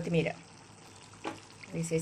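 Gobi aloo curry simmering and sizzling softly in a kadai, a steady hiss, with a few brief spoken words at the start and near the end.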